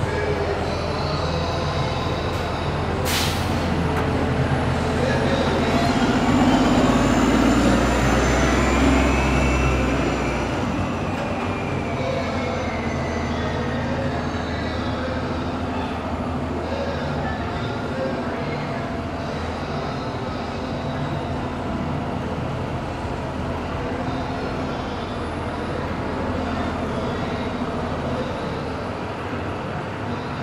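Elevated subway train passing overhead on the 7 line's steel structure. Its rumble is loudest about six to ten seconds in, with a wheel squeal, then dies down to steady street traffic noise. A sharp click comes about three seconds in.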